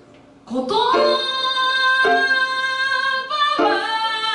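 A woman singing live over grand piano: after a brief lull at the start she comes in with a long held note, then moves into a new phrase a little after three seconds in.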